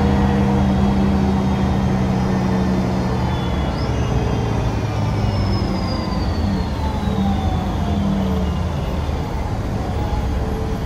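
Voith DIWA automatic gearbox whistling as an articulated diesel bus brakes, heard from inside the cabin. About 4 s in, a high melodious whistle rises briefly and then glides slowly down in pitch as the bus slows, over the steady hum of the engine.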